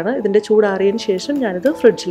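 A woman speaking: continuous narration, with no other sound standing out.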